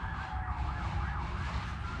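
Several emergency-vehicle sirens wailing over one another, their pitch sweeping up and down, over a steady low rumble.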